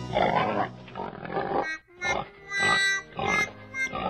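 Pig grunting, a string of short grunts about two a second, over light background music.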